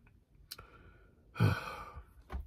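A man's short sigh about one and a half seconds in, a breath out that starts with a brief low hum and trails off. A faint click comes a second before it.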